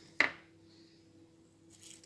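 A single sharp plastic click, a toothbrush knocking against a plastic paint palette as it is picked up, followed by faint steady room hum.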